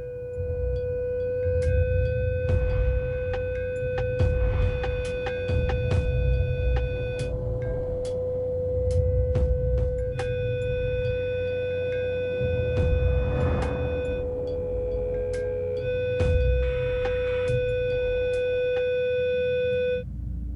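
A loud, steady pure tone at about 495 Hz, the resonant note of a wine glass, played through a loudspeaker aimed at the glass to drive it into resonance. A low, uneven rumble runs underneath.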